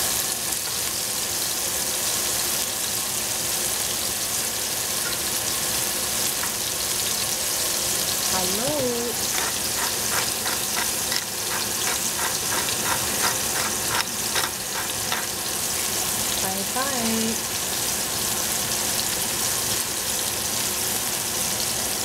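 Sliced mushrooms sizzling steadily as they fry in a stainless steel pot. About halfway through, a pepper mill is twisted over the pot, giving a run of quick, even grinding clicks for about five seconds.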